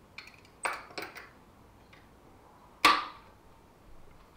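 Locking C-clamp pliers knocking and clicking against a metal bracket as they are fitted: several small clinks and clacks in the first second, then one loud, sharp metallic snap with a short ring about three seconds in.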